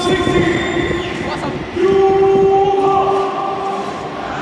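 Stadium PA playing the lineup video's soundtrack: held, horn-like synthesized chords. A louder, lower chord comes in just before the middle and is held until shortly before the end. Faint crowd noise sits underneath.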